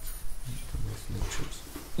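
A few brief, faint murmurs from a low voice, with no clear words.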